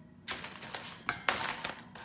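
Knocks, rattles and scrapes from a freshly assembled metal-framed three-shelf unit being handled, the loudest a little over a second in.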